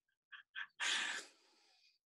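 Two faint mouth clicks, then a short breathy exhale lasting about half a second.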